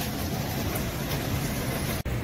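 Steady outdoor street noise while people jog along a city road: an even low rumble with no clear single source.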